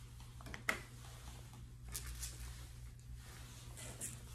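Faint grooming handling sounds over a steady low hum: one sharp click a little under a second in, then a few lighter ticks and rustles from tools and hands working a Yorkshire Terrier's coat.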